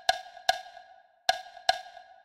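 Percussion strikes tapping out a simple rhythm: four short, ringing, wood-block-like hits, the first two and the last two about 0.4 s apart with a longer gap between them, in the pattern of quarter notes and paired eighth notes.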